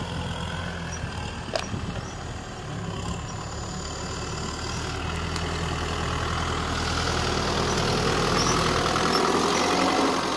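Kubota M6040SU tractor's four-cylinder diesel engine running steadily as the tractor drives along, getting gradually louder as it comes close, loudest near the end.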